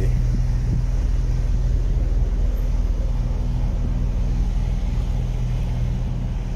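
An idling car engine: a steady low hum that does not change.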